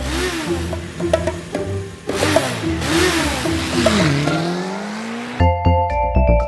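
Cartoon motorbike engine sound effects revving, the pitch gliding up and down, with a louder rush of noise about two seconds in and a long rising rev near the end, over a children's music track. About five seconds in, a bright musical jingle takes over.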